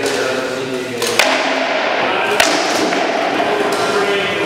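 Two sharp cracks of rattan weapons landing in armoured sparring, about a second apart, the first a little past one second in.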